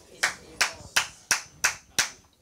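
A steady run of single hand claps, about three a second, with a little room echo after each.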